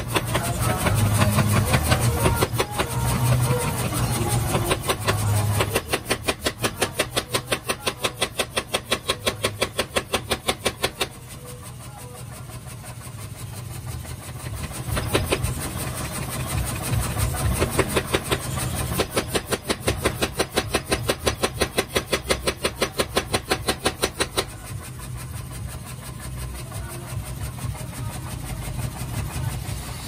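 Mechanical power hammer forging a red-hot carbon-steel knife blank. Its ram strikes in rapid even blows, about four a second, in two long runs, over the steady hum of the hammer's motor.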